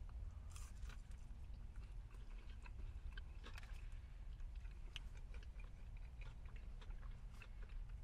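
Two people biting and chewing a fried chicken sandwich and waffle fries, with small crunches and wet mouth clicks scattered throughout over a low steady rumble.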